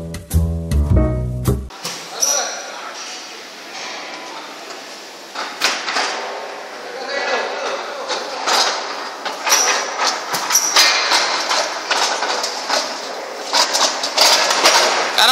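A short musical jingle ends under two seconds in. Then comes factory floor noise with irregular clacks and knocks as a heavy metal casting rolls along a gravity roller conveyor over its steel rollers and around a curved section.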